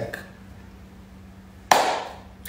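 A man's word trails off into a short pause with a faint steady hum. Near the end comes a sudden sharp noise that fades quickly.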